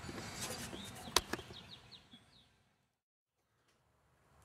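Faint chirps of a small bird, a quick run of short falling notes, with a sharp click just before them. The sound then cuts out to silence about halfway through.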